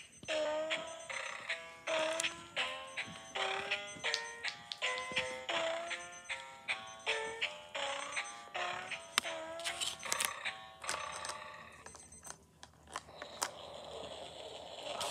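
Battery-powered children's musical picture book playing its electronic tune in short notes, some sliding in pitch, sounding wrong because its batteries are running down. The tune stops about eleven seconds in, leaving a few clicks and rustles.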